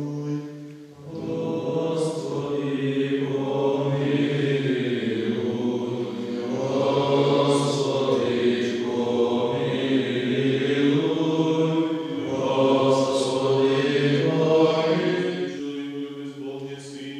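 Men's voices singing Byzantine-rite liturgical chant together in slow, sustained phrases, with short breaks for breath about a second in and again about twelve seconds in.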